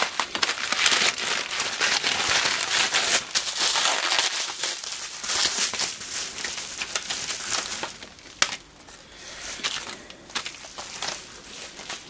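A mailer bag being opened and handled, with dense crinkling and rustling of its packaging. A single sharp click comes a little after eight seconds in, and quieter rustling follows.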